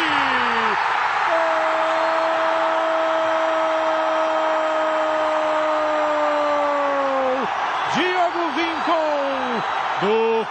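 A TV football commentator's drawn-out goal shout, held as one long note for about six seconds, over the steady noise of a stadium crowd. A few short shouted words follow near the end.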